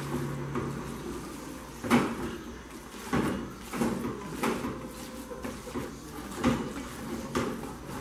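A spoon stirring thick shredded-chicken and flour filling in a metal pot, knocking and scraping against the pot's side at irregular intervals of about a second.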